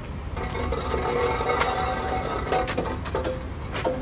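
Manual dock-mounted steel wheel chock pushed by its handle along its metal track: a continuous metal-on-metal scraping slide with a ringing edge, starting just after the beginning, with a few sharp clanks near the end.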